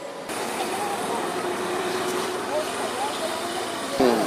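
Outdoor street ambience: a steady noise of road traffic with indistinct voices underneath. The sound changes abruptly about a third of a second in, where a new shot begins.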